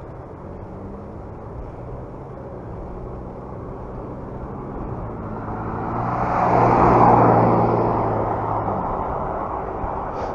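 Wind and road noise on a moving bicycle's camera microphone, with a car overtaking from behind: its sound swells to its loudest about seven seconds in, then fades as it pulls away ahead.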